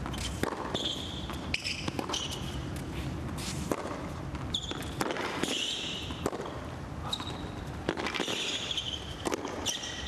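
Tennis rally on a hard court: a tennis ball struck back and forth by rackets, sharp hits a second or more apart, with sneakers squeaking on the court between shots.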